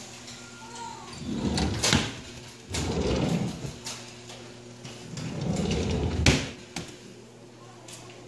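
A kitchen drawer sliding on its runners, pulled out and pushed back in a few times, with sharp knocks as it hits its stops about two seconds in and again past the six-second mark.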